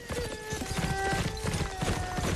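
Many hooves clip-clopping in a dense, irregular patter, with film music of held melodic notes that step from one pitch to another over it.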